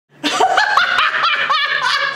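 A woman laughing hard, one burst of laughter after another in quick succession.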